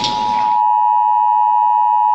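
Emergency Alert System attention signal: two steady tones sounding together in one harsh, unwavering alert tone. Other noise fades out under it in the first half second.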